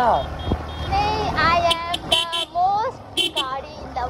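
A high-pitched voice calls out in short, gliding exclamations over a steady low rumble of street traffic. A quick run of short, high beeps sounds in the first second.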